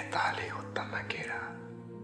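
Soft, breathy speech for about the first second and a half, over steady sustained background music tones.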